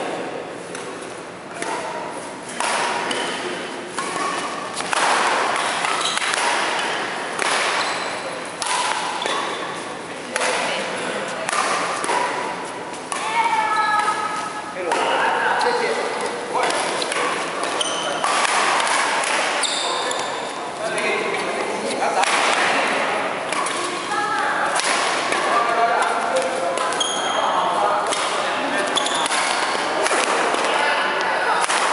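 Badminton doubles rally: repeated sharp racket strikes on the shuttlecock, about one a second and quicker in flurries, with players' shoes on the wooden court floor, echoing in a large hall.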